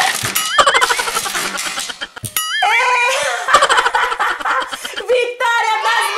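Plastic toy shark from the Tubarão Bocão game snapping its jaws shut with a sharp clack, followed by giggling and laughter. Near the end, music with crowd cheering starts.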